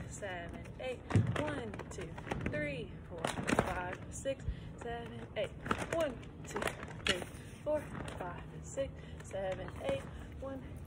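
A woman's voice, soft and wordless, gliding up and down in pitch with short held notes, and a single thump about a second in.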